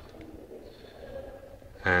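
Faint room noise in a pause between spoken sentences, with a man's voice starting again near the end.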